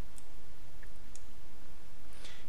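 A couple of faint computer-mouse clicks while objects are selected on screen, over a steady low hum of background noise.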